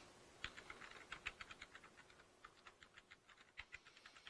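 Faint, rapid, irregular keystrokes on a computer keyboard, starting about half a second in.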